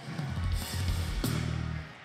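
Church backing music with drums and a sustained low bass note playing under the sermon, with a sharp drum hit a little past halfway.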